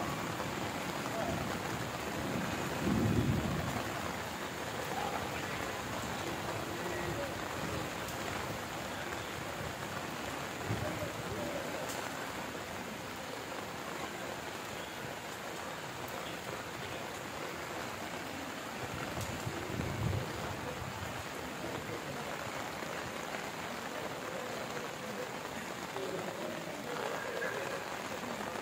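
Steady rain falling on and around a corrugated metal roof, an even hiss throughout, with a few brief low swells.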